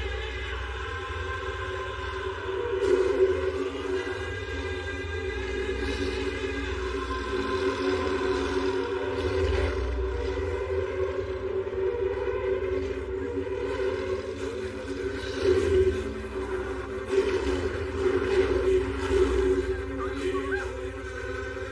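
Film background score: sustained held tones over a steady low rumble, swelling louder a few times.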